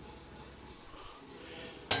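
Quiet room tone: a faint, steady low hum with no distinct sounds.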